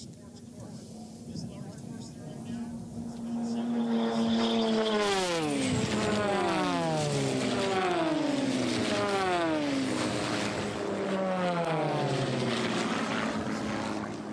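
Single-engine propeller race planes (Lancairs and a Glasair) flying past at racing speed one after another. Each engine note drops in pitch as it goes by. The sound builds from about three seconds in and stays loud.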